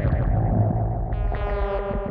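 Blippoo Box and Benjozeit synthesizers patched together, playing a noisy, distorted electronic drone over a steady low hum. About a second in, a bright buzzy tone with many overtones comes in.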